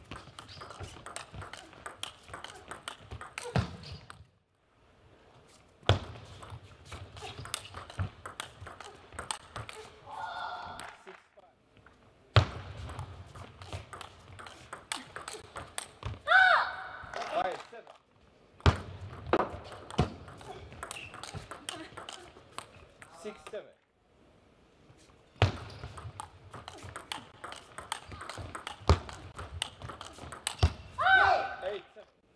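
Table tennis rallies: quick runs of sharp clicks as the plastic ball strikes the rackets and the table, cut off abruptly into silence several times between points. A player gives a short shout twice, around ten and sixteen seconds in.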